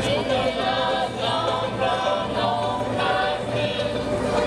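A group of voices singing a Norfolk Island traditional song together, as accompaniment to the dance.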